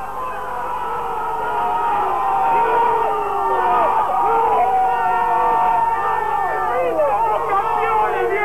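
A crowd of many voices shouting and cheering together at once, some cries held long, in celebration of a championship win.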